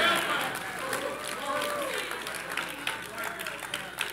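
Congregation clapping, a quick scatter of hand claps, with faint voices calling out in response early on; the sound fades over a few seconds.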